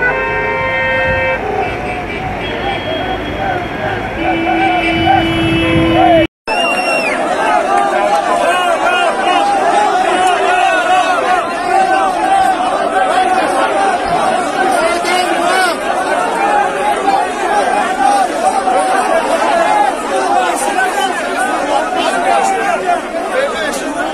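Several car horns honking in steady held blasts, overlapping, for about six seconds. After a sudden cut, a large crowd shouts continuously, a dense mass of many voices.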